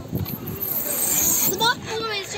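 Children's voices, with a short call near the end, over a hissing noise that rises and stops about a second and a half in.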